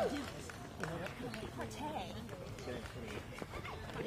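Runners' footsteps on the asphalt road, light irregular slaps, with faint voices chatting in the background.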